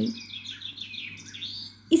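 Small birds chirping and twittering in the background, a run of quick high calls that fades out near the end, with a faint steady hum under it.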